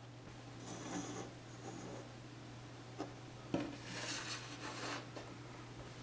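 Faint handling sounds of small parts and a hand-held soldering iron on a wooden workbench: light rubbing and scraping in two spells, with two small clicks a little past halfway.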